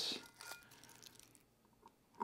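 Faint scratching and crinkling of sublimation paper as a fingernail peels it from the bottom edge of a freshly pressed tumbler.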